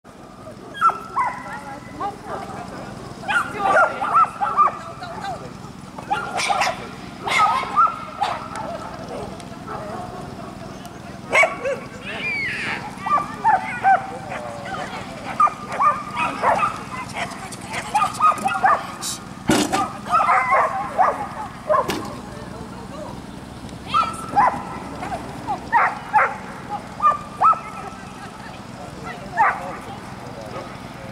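A dog barking on and off, mixed with people's voices calling out, and a few sharp knocks.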